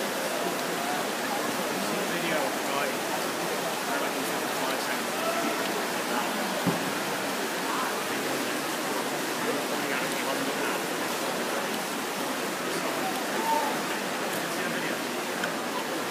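Steady crowd noise in an echoing indoor pool hall during a race: many spectators' voices blurred together into a continuous din, with faint individual calls showing through now and then.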